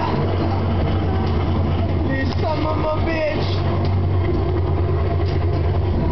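Steady low rumble from a bobsled simulator ride running, with a few short voice sounds over it.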